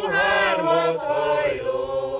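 A small group of Bukovina Székely singers, men and women, singing unaccompanied in long, slow held notes.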